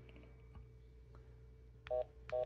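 Near the end, a BKR 9000 handheld radio gives a short electronic error beep because the selected 700 MHz channel is an invalid band for this VHF/UHF radio. Before the beep there is only a faint steady hum.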